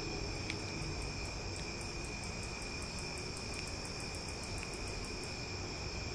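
A quick run of faint snaps, about six a second, over a steady background of chirping crickets.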